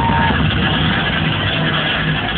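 Loud electronic dance music from a club sound system, with heavy steady bass, heard muffled with a dull top end.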